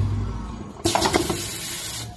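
Semi-automatic wipe packing machine running with a low hum. About a second in, a sudden loud hiss of compressed air from its pneumatic cylinders cuts in and holds for about a second.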